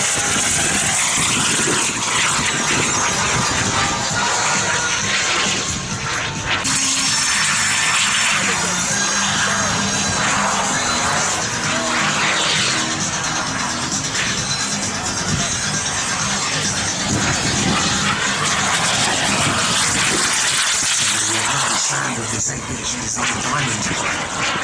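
The turbine engine of a large radio-controlled model jet running in flight as a steady high hiss and whine, with music playing over it.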